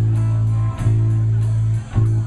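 Live rock band playing a song: guitars over a loud bass line of held notes, with a beat about four times a second.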